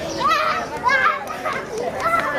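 A young child talking and calling out in a high voice, close to the microphone.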